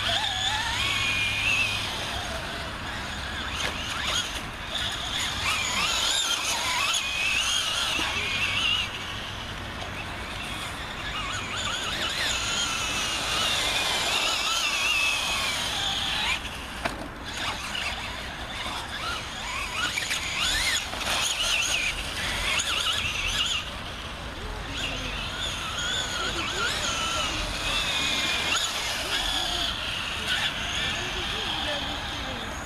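Traxxas Slash 2WD radio-controlled short-course truck driving on dirt, its high whine rising and falling in pitch over and over as the throttle changes.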